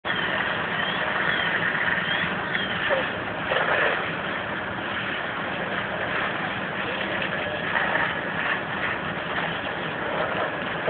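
Fire engines running at a fire scene: a steady low engine hum under a wash of noise, with faint voices now and then.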